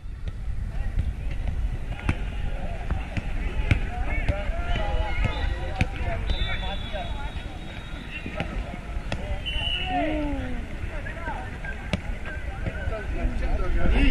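A soccer ball being kicked back and forth on artificial turf, with sharp thuds every second or two. Players' scattered voices and a steady low rumble run underneath.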